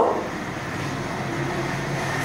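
Steady background noise with a faint low hum and no distinct strokes or clicks.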